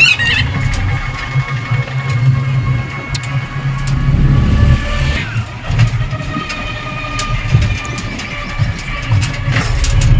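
Ride inside a battery-powered e-rickshaw (toto): a steady low rumble of the wheels and body on a rough village road, with scattered rattles and clicks and a thin motor whine that shifts about halfway through.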